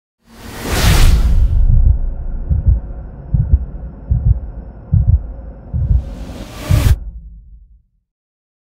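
Logo intro sound design: a loud whoosh, then a deep bass pulse beating about once every three-quarters of a second over a low drone, a second whoosh near the end, then a fade out.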